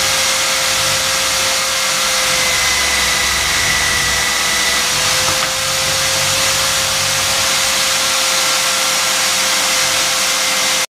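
Electric buffing wheel running steadily with a constant hum and whirr while an aluminium bracket is pressed against the spinning cloth mop to polish it.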